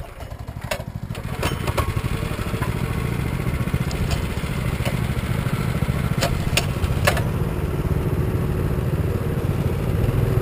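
Small single-cylinder dirt bike engine running, building over the first couple of seconds and then holding steady as the bike rides off, with a handful of sharp rattles and knocks from the bike over the first seven seconds.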